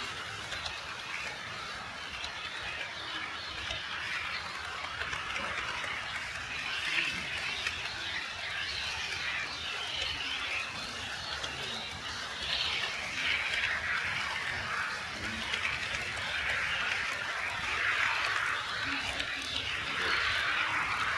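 HO-scale model train running on sectional track, making a steady hissing, rolling noise that swells and fades over the stretch.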